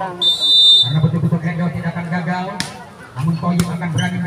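Referee's whistle blown once in a short, shrill blast of about half a second, signalling the serve in a volleyball match. Later come two sharp smacks, the volleyball being struck.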